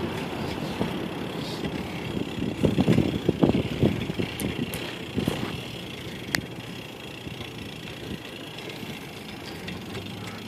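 Street traffic noise with a vehicle engine running, and a cluster of knocks and rattles about three seconds in.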